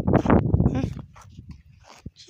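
A boy's voice close to the phone, unworded and loud for about the first second, then dying away to faint sounds.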